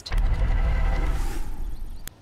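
Newscast transition sound effect: a deep rumble with a swelling whoosh, cut off suddenly near the end.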